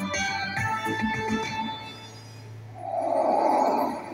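Ultimate Fire Link video slot machine playing its bonus-win music with ringing tones, which dies down about halfway through, then a rushing noise swells near the end as the reels change to the base-game screen.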